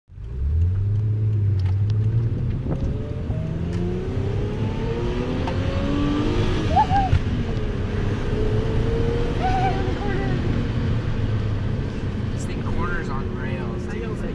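Twin-turbo V6 of a 1996 Mitsubishi Legnum VR4 heard from inside the cabin while driving. The engine pitch rises as it accelerates over the first few seconds, then settles into steady running with road noise.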